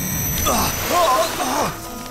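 Several short cries and grunts from cartoon voice actors, rising and falling in pitch, over background music, with a brief rushing sound effect about half a second in.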